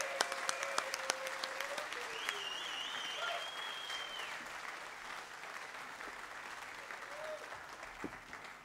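Audience applause after a band member's introduction, thinning and dying down gradually. A high wavering tone rises above it from about two to four seconds in.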